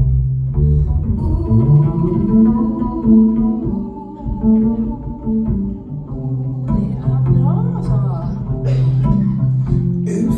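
Double bass playing live, a slow line of long, low held notes.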